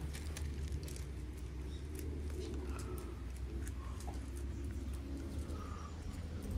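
Birds calling, with low repeated cooing, over a steady low rumble and scattered small clicks.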